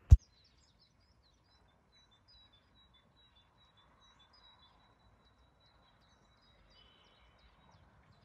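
A single sharp knock just after the start, as a hand bumps the recording phone. Then faint birdsong: small high chirps repeating over quiet outdoor background noise.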